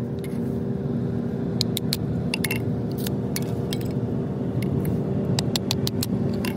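Thin wooden sticks being split on a small kindling splitter. There are irregular light wooden clicks and clatter, about a dozen in a few seconds, as split pieces knock against the blade and drop onto concrete. A steady low drone runs underneath.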